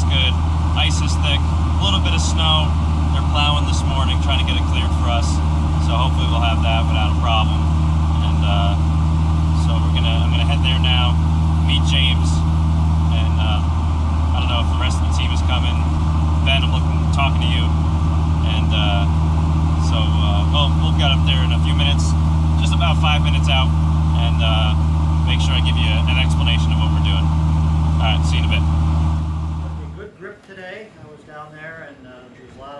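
Car engine running at a steady cruise with road noise, heard from inside the bare cabin of a roll-caged race car; the drone holds an even pitch and cuts off just before the end.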